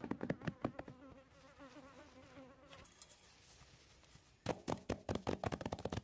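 A buzzing insect with a wavering drone, between two fast runs of sharp clicks or taps. The clicks are the loudest part, about a second's worth at the start and a second and a half near the end.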